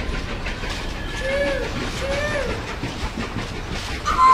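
Steam train chugging with a steady hiss, and two short toots that rise and fall, about a second apart.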